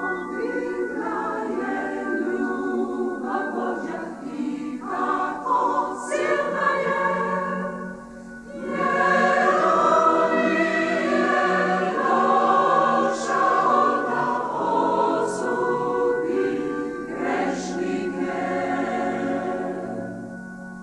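Large mixed choir of men's and women's voices singing a hymn in long sustained phrases, dropping away briefly about eight seconds in before coming back in fuller and louder.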